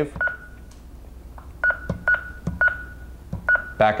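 Honeywell L5100 alarm panel beeping as its touchscreen is pressed: five short, high-pitched key-press beeps spaced irregularly over a few seconds while the zone settings are saved.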